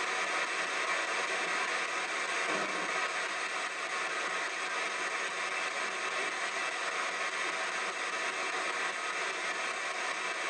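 PSB-7 spirit box radio in reverse sweep through stereo speakers, giving a steady hiss of radio static.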